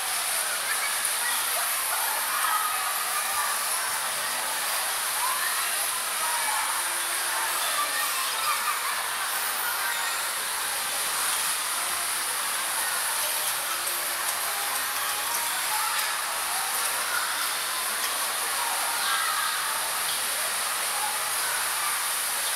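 Steady, hiss-like din of an indoor bumper-car arena while the cars are running, with faint distant voices.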